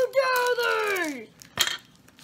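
A drawn-out vocal exclamation that falls in pitch over about a second, followed by a single short click about one and a half seconds in.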